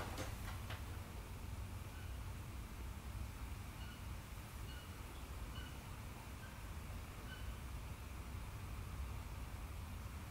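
Quiet workshop room tone: a steady low hum with faint hiss, opening with a single sharp click. A few faint, short, high chirps come in the middle.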